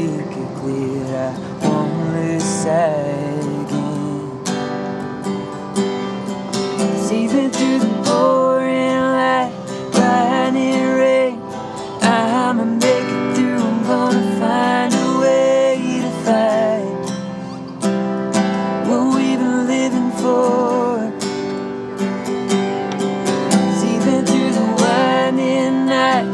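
Acoustic guitar strummed steadily, with singing over it at times, as part of a song performed live.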